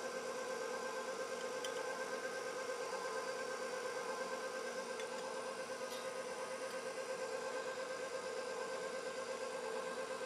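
KitchenAid bowl-lift stand mixer running steadily, its motor humming with a fast slight pulsing as the flat beater works a thick cake batter. A few faint clicks sound about two, five and six seconds in.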